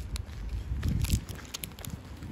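Low rumble of wind and handling on a phone microphone while walking, with a few light crackles from a foil-lined snack wrapper being peeled open.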